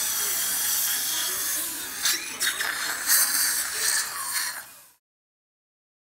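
Dental instruments working in a child's mouth during a teeth cleaning: a steady high hiss, with irregular gritty, sputtering bursts from about two seconds in, cutting off suddenly near the end.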